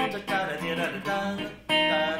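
Clean electric guitar strumming ringing dominant ninth chords, with a fresh chord struck sharply near the end. The passage is fumbled.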